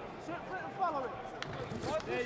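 Ringside voices shouting over a boxing bout, with one sharp slap of a boxing glove landing about one and a half seconds in.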